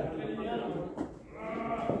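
A person's voice talking in two stretches, with a short pause about a second in.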